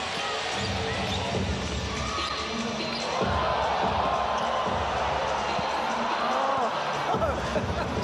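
Basketball dribbled on a hardwood court under steady arena crowd noise. The crowd noise grows louder about three seconds in, as the ball handler works a crossover.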